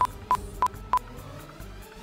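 Four short electronic beeps at one high pitch, evenly spaced about three a second, each starting with a sharp click, then a faint steady background.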